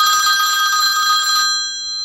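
A telephone ringing once as a hotline ring cue: one long ring of several steady high tones that fades away about one and a half seconds in.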